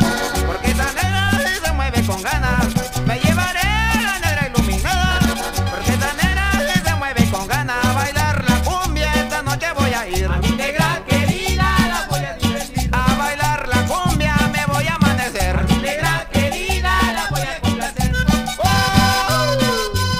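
Instrumental passage of a 1982 Mexican cumbia recording: a steady bass beat and percussion under a melody line with sliding notes.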